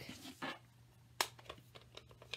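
Light clicks and scrapes of craft supplies handled on a tabletop as a plastic stamp ink pad case is picked up and moved, with one sharp click about a second in, over a faint steady hum.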